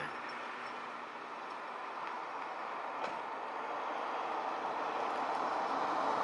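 Road traffic noise: a steady rush of passing vehicles that slowly grows louder.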